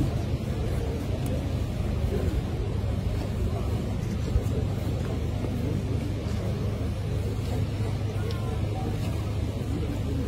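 Steady low rumble with an indistinct murmur of voices from a crowd, no single voice standing out.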